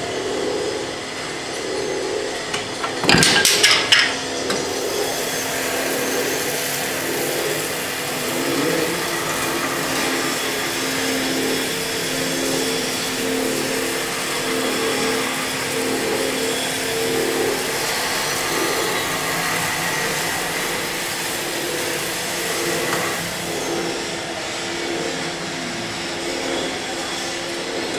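Automatic bobbin winding machine running with a steady mechanical hum and whirr. A loud clatter of knocks comes about three seconds in.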